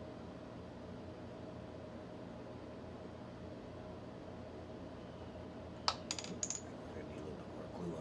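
A quick cluster of small, sharp clicks and taps of hard plastic on a workbench, about six seconds in, over a steady low hum.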